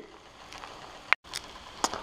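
Faint sizzling of rice and beaten egg frying in a nonstick pan, broken just after a second in by a click and a brief dropout, followed by a couple of light ticks.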